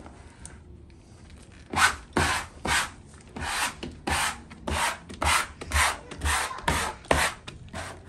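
A plastic wallpaper smoother swept over and over across freshly hung wallpaper. It starts faint, then about two seconds in comes a series of about a dozen short rubbing strokes, roughly two a second.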